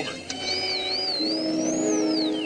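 Electronic music: a single high synthesizer tone wavers up and down twice, then climbs and begins to fall near the end, over sustained lower synth notes.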